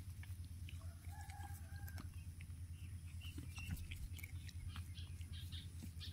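Faint small clicks of a puppy gnawing at a sandal, with a faint distant bird call about a second in, lasting about a second.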